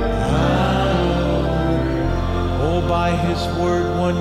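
Soft church music: sustained keyboard chords whose bass note changes every second or two, with a man's voice singing slowly over them.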